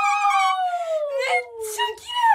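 Girls squealing with delight: one long high-pitched cry that slowly falls in pitch, then short excited cries near the end.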